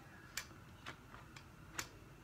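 About five short, sharp clicks in under two seconds, the first and the last the loudest, as of small objects being handled.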